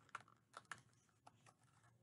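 Faint, light clicks and ticks, about half a dozen scattered through the moment, as a small cosmetics package is handled and opened by hand.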